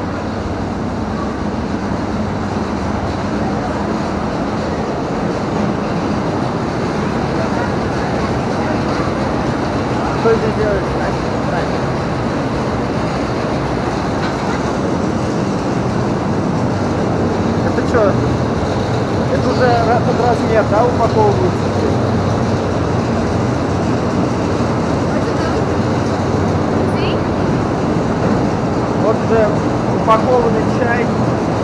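Steady, loud mechanical rumble of tea-factory processing machinery running, with a low hum underneath. Indistinct voices come through briefly about ten seconds in and again around eighteen to twenty-one seconds.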